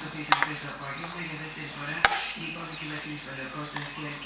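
Metal cutlery clinking against a bowl, two sharp clicks about a quarter second in and about two seconds in, over faint room noise.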